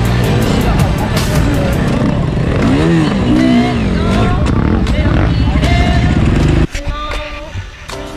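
KTM enduro motorcycle engine revving on a helmet-camera recording, mixed with a backing music track. About two-thirds of the way through, the engine sound cuts off abruptly and only the music carries on.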